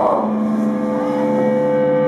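Amplified electric guitars holding a steady, droning note at the opening of a live metal song, with no drums yet.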